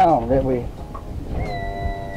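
A man's voice making drawn-out wordless sounds, falling in pitch at the start, with a steady held high note from about halfway in.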